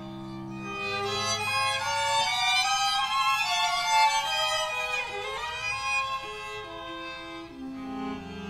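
String quartet (two violins, viola and cello) playing jazz-influenced chamber music. A high violin line climbs over the first few seconds, and a quick downward glide comes about five seconds in.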